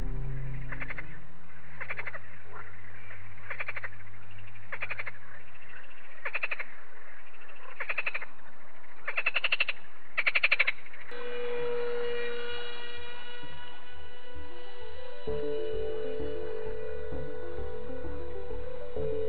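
A frog croaking: about eight rattling croaks, roughly one every second and a bit, the last few loudest, over low steady background tones. From about eleven seconds in the croaks stop and background music with held notes and a repeating bass takes over.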